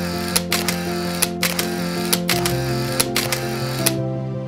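Background music: held chords over a quick, clicking beat, with the chord changing a little after two seconds in.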